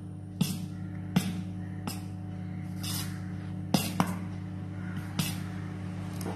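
Metal spoon stirring dosa batter in a stainless steel bowl, knocking against the bowl about eight times at irregular intervals, over a steady low hum.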